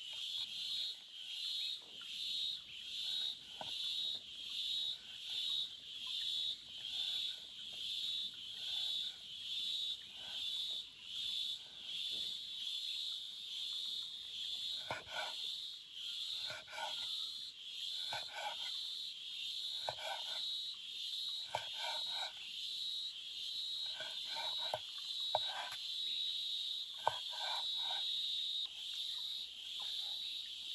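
A high-pitched chorus of wild insects or frogs calling, pulsing about one and a half times a second and then steadier. From about halfway, groups of short lower calls join in. Near the end come a few sharp taps of a cleaver on a wooden cutting board.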